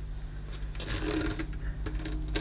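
Light clicks and knocks of the metal canister body of a vintage Electrolux Model 60 cylinder vacuum cleaner being handled and picked up, a few of them about a second in and near the end. The vacuum is not running.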